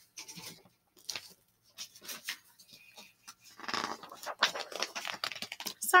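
Paper rustling and scattered light clicks from a paperback picture book being handled after a page has come loose, with a brief muffled vocal sound about four seconds in.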